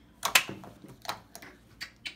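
A string of short sharp clicks and taps from plastic game pieces being handled at the toy slingshot launcher, the loudest two close together about a third of a second in, then lighter ones scattered after.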